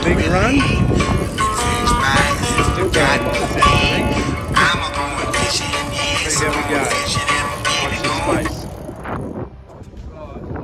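Background song with a singing voice, fading out about nine seconds in.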